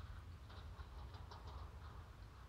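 Quiet room tone: a faint steady low hum with a few faint light ticks.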